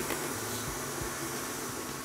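Electric stand mixer with a paddle attachment running steadily at medium speed, beating butter and sugar.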